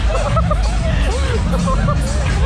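Loud fairground music with excited voices shouting and laughing over it, and a steady low rumble under everything.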